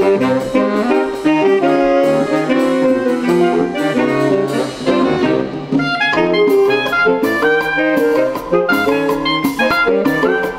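Saxophone quartet, from soprano down to baritone saxophone, playing a lively Colombian cumbiamba tune in close harmony over a drum kit. The cymbal and drum strokes come more often from about six seconds in.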